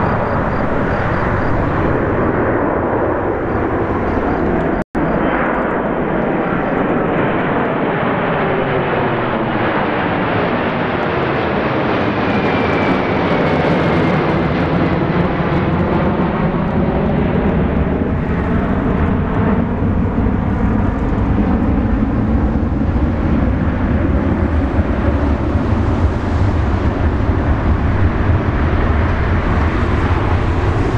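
Boeing 747-400 climbing out after takeoff, its four jet engines at climb power making a loud, steady rumble. Slowly sweeping tones rise and fall through the noise as the jet passes and moves away. The sound cuts out for a moment about five seconds in.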